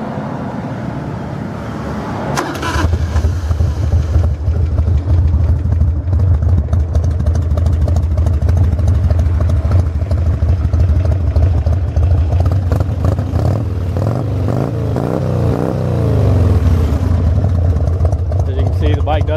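1992 Harley-Davidson Dyna Glide's 1340 cc Evolution V-twin being started: it catches about two and a half seconds in, then runs steadily. Late on, its pitch rises and falls a few times as it is revved.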